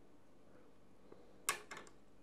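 Small scissors handled, a sharp click about one and a half seconds in, followed by a few quick lighter clicks.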